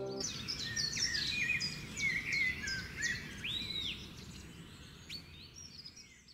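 Several birds chirping and whistling in quick, overlapping calls over a faint background hiss, fading out toward the end. A held music chord stops just after the start.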